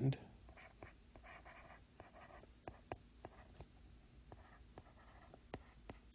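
Faint handwriting with a stylus on a tablet screen: irregular light ticks as the tip taps the glass, with soft scratchy strokes between them.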